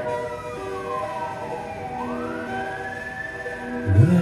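Music: steady held notes under a slow siren-like gliding tone that falls for about two seconds, then rises again.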